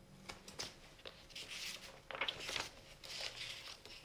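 Paper cards being handled: a few light clicks, then several short bursts of paper rustling and crinkling.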